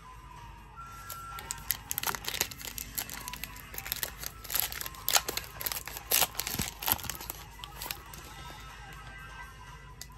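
Foil wrapper of a Mosaic basketball trading-card pack being torn open and crinkled by hand: a quick run of sharp crackles and tears from about two to seven seconds in, over faint background music.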